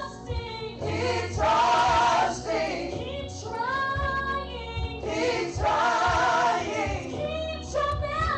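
Women singing a gospel praise song through microphones: a female lead voice in long held phrases with a wavering pitch, with backing voices.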